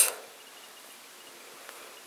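Quiet, steady background hiss: room tone, with a faint high dotted tone.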